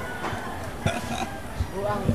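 People's voices talking in the background, with a couple of short sharp knocks about one second in and again near the end.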